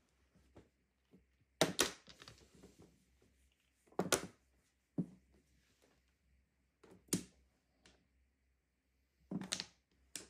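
Mahjong tiles clacking as they are picked up and set down: about six sharp clicks spaced irregularly a second or few apart.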